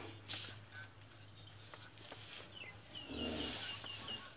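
Small birds chirping, ending in a quick run of about eight short, evenly spaced chirps. A brief low sound comes under them about three seconds in.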